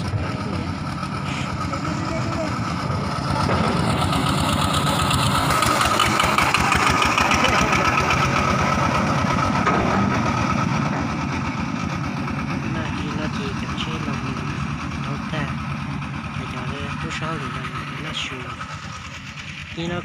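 Engine of a small farm truck running steadily, heard from on board, with a rapid low pulsing. It grows louder a few seconds in and eases off after about eleven seconds.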